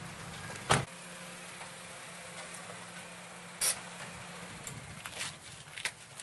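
Car door clunks: a sharp clunk about a second in and another just past the middle, then a few smaller knocks near the end, over a steady low hum that fades out after about four and a half seconds.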